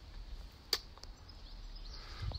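Quiet outdoor background with a low rumble and a single sharp click about three-quarters of a second in.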